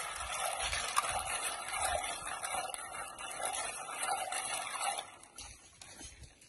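Hands swishing and rubbing freshwater snails in water in a metal pot, washing them; the splashing goes on steadily and stops about five seconds in.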